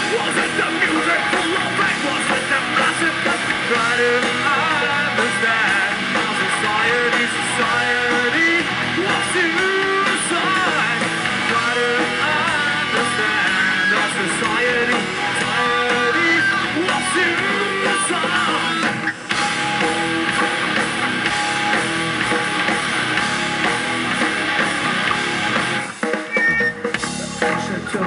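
Live metal band playing loudly: electric guitars, bass and drum kit, heard from among the audience.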